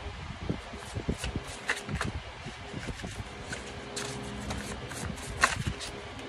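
A deck of cards being shuffled by hand: irregular soft slaps and flicks of cards against the stack, with one sharper snap about five and a half seconds in.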